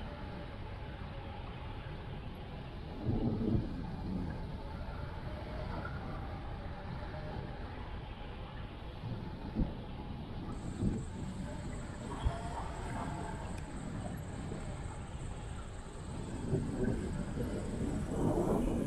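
Wind rushing past a hang glider and its wing-mounted microphone in flight, a steady rush with gusty swells and a few sharp knocks from the airframe, growing louder near the end as the glider comes in to land.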